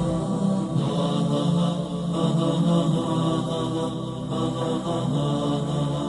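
Wordless, chant-like vocal music: a drone of humming voices on held notes that shift slowly.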